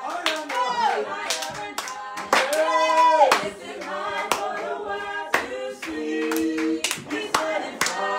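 Several people clapping their hands in a steady rhythm while voices sing praise, some notes held long.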